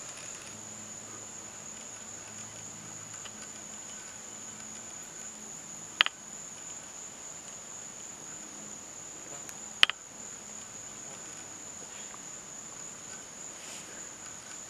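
Steady high-pitched drone of crickets or similar insects. Two sharp clicks about four seconds apart are the loudest sounds.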